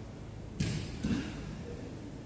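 Grappling bodies hitting a foam mat: a sharp thud about half a second in that rings briefly in the large hall, then a softer thump a moment later.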